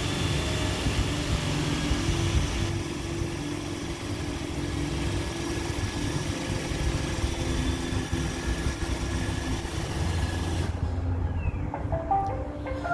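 iRobot Roomba E5 robot vacuum running, its vacuum motor and brushes giving a steady whirring noise as it drives onto its charging dock. The noise cuts off suddenly near the end as the robot settles on the dock.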